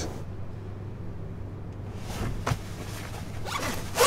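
A clothing zipper being undone in short rasps, one about two and a half seconds in and more near the end, over a low steady hum.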